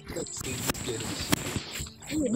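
Faint voices over background music, with a steady high-pitched insect trill and two sharp clicks about a second apart.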